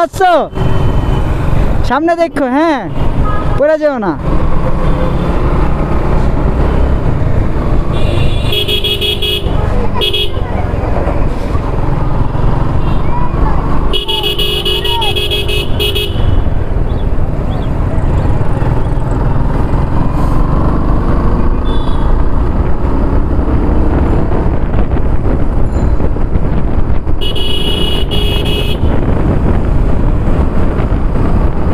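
Motorcycle riding through traffic: a steady rumble of wind and engine is heard throughout. A vehicle horn honks three times, each for a second or two: about a third of the way in, around the middle, and near the end.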